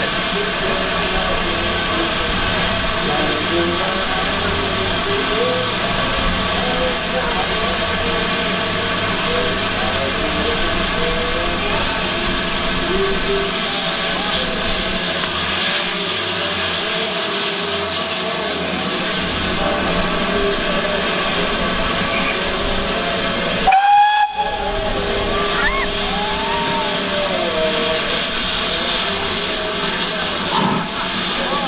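GWR Hall class steam locomotive No. 4930 standing with a steady hiss of steam, then a short blast on its whistle about three quarters of the way through.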